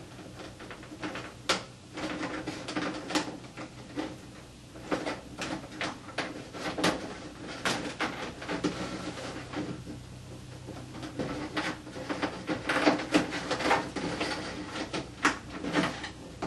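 Hands working wire leads and plastic connectors inside the fan openings of an ATI Dimmable SunPower T5 light fixture's metal housing: scattered, irregular small clicks, taps and rustles as the connections are tugged and pushed back in.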